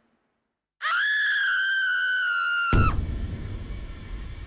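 A long, high-pitched scream starts about a second in, holds steady for about two seconds, then breaks off at a sharp click into a low rumbling noise.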